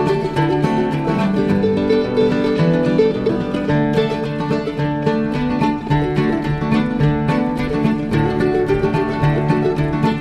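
Acoustic bluegrass string band playing the instrumental introduction of a gospel song, with plucked strings picking out a steady rhythm before any singing.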